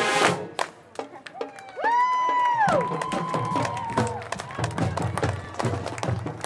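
High school marching band's final brass chord cuts off right at the start. Crowd cheering follows, with a long held whistle that falls away about two seconds in. The drumline then starts a steady marching beat.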